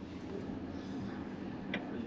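Cabin of a VinFast VF8 electric SUV pulling away under throttle: a faint, steady hum of motor and tyres, with a single click near the end.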